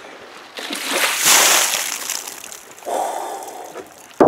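Icy lake water dumped from a plastic tub over a person's head and body. The pouring and splashing starts about half a second in, is loudest about a second in, then tapers off, with a shorter, lower rush near the end.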